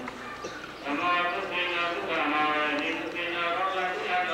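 A single voice intoning in long, drawn-out, sing-song phrases, like Buddhist chanting or recitation, with a short break about half a second in.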